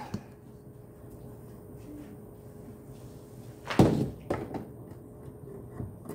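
A single sharp knock about four seconds in, with a smaller one just after, over a faint steady electrical hum: the handling knock of a second load, a heater or fan, being plugged into the inverter during a battery discharge test.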